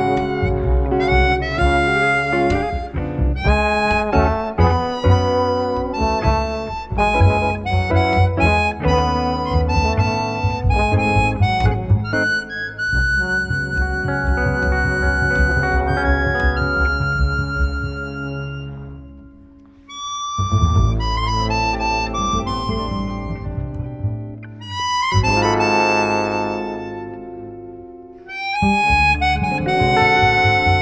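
Live small-group jazz: a chromatic harmonica plays a melody over plucked double bass and hollow-body electric guitar. In the second half the music drops away briefly three times between phrases.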